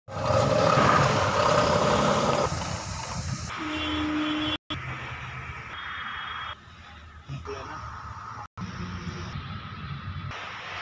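Mahindra Blazo 31 heavy truck's diesel engine idling while the truck stands, heard across several short clips with abrupt cuts between them; loudest in the first two or three seconds.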